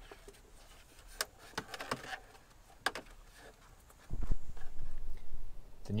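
Faint scattered clicks and rustles as a washer hose and trim are handled at a Land Rover Defender's rear door pillar. About four seconds in, a much louder low rumble with thuds begins.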